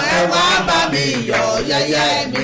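A man and a woman singing together in a chant-like worship song, holding and sliding between long sung syllables such as "da".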